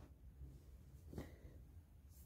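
Near silence: faint room tone, with one short faint click a little over a second in.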